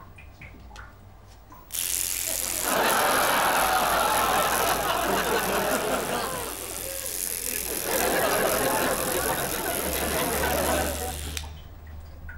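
Electric toothbrush running, a loud rattling whirr that switches on suddenly near the start, dips briefly midway and cuts off suddenly near the end.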